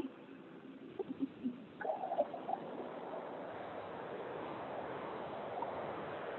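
Squirrel-cage blower on a maple-sap evaporator's steam-away preheater coming on about two seconds in and then running as a steady rushing noise, forcing air up through the incoming raw sap to make a mock boil.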